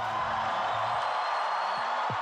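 Large arena crowd cheering and clapping, a steady wash of noise.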